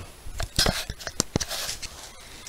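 Several light, irregular clicks and knocks of tools and small parts handled on a workbench.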